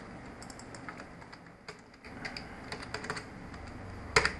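Computer keyboard typing and mouse clicks: scattered light clicks in short clusters, as colour values are keyed into a field.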